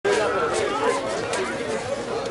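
Indistinct chatter of several people talking, with no clear words.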